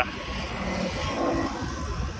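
Road traffic: a vehicle going by, a steady rushing noise.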